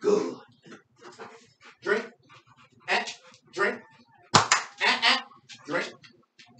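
A pit bull making short, repeated vocal sounds in a small room, with a sharp knock a little after four seconds in.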